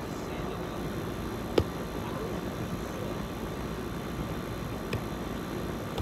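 A volleyball being struck by hand in an outdoor game: one sharp smack about a second and a half in and a lighter one near the end, over a steady rushing noise.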